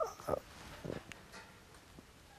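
A man's brief hesitant vocal sounds and breath in a pause between words, a couple of short murmurs in the first second, then quiet room tone.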